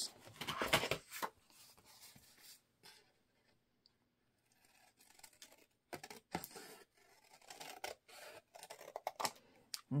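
Large scissors cutting across a sheet of patterned craft paper, snipping in a short run in the first second, then, after a pause, in another run from about six seconds in.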